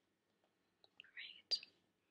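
Near silence, then a faint breath and a short click about a second and a half in.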